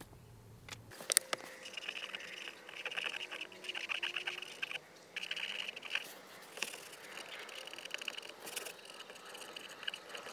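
A small tool scraping and picking at vinyl decal lettering on a textured plastic glovebox lid, in repeated scratchy stretches with short pauses, after a sharp click about a second in.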